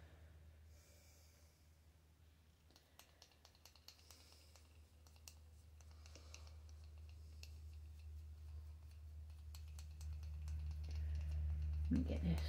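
Faint, irregular clicks and light taps of a paintbrush dabbing paint onto a concrete statue, over a steady low hum.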